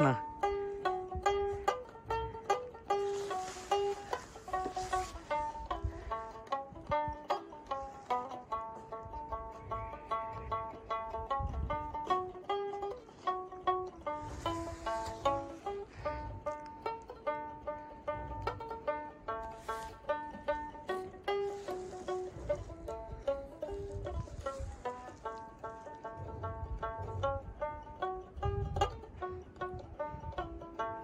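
A small carved Himalayan long-necked lute being plucked, playing a continuous folk melody of quick, ringing notes.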